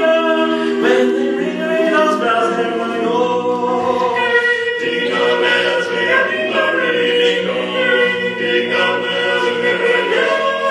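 Male barbershop quartet singing a cappella in close four-part harmony, with chords held and moving together.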